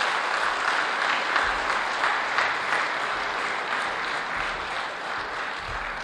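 Audience applauding, a steady clapping that begins to die away near the end.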